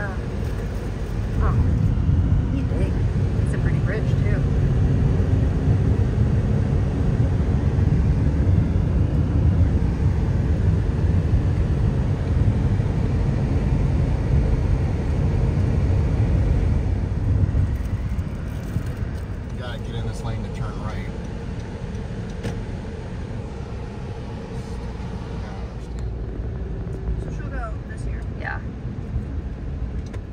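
Road and tyre noise heard from inside a moving car's cabin, a steady low rumble. It is louder through the first half and eases off a little past halfway, once the car is in slower city traffic.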